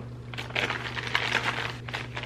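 Plastic bag crinkling and rustling irregularly as a hand rummages inside it.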